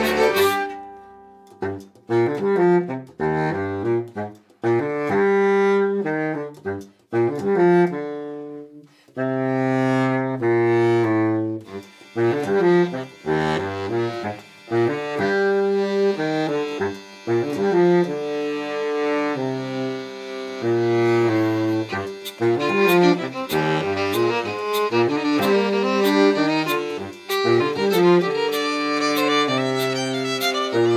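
Folk quartet of baritone saxophone, fiddle, accordion and hurdy-gurdy playing a tune. The full sound breaks off at the start, giving way to short low phrases with pauses between them; from about a third of the way in the playing runs on continuously, and a steady ticking beat of about two a second joins near two-thirds through.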